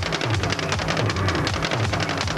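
Live rock band playing an instrumental passage: a bass line moves under drums with busy cymbal strokes and a continuous wash of guitar and cymbals.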